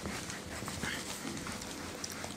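Whiteboard duster wiping marker ink off a whiteboard in repeated rubbing strokes.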